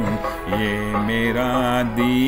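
A man singing a slow Hindi film song in long held notes that step gently up and down, over a recorded musical backing track.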